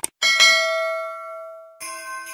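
A mouse-click sound effect followed by a bright bell chime, the notification-bell ding of a subscribe animation, which rings and fades over about a second and a half. Just before the end, music starts.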